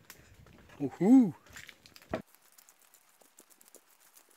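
A man's short wordless vocal sound about a second in, rising then falling in pitch, then a single sharp click. Faint footsteps and crackles on the trail fill the rest.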